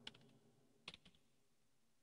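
Faint computer keyboard keystrokes: a few clicks right at the start and a short cluster about a second in.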